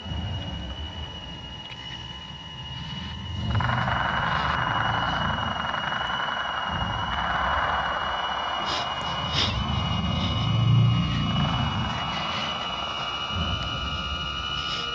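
Droning electronic sound design for a telepathic scan: a low rumble under a steady high whine. A rushing layer swells in about a third of the way through, with a few sharp clicks and a surge in loudness near the two-thirds mark.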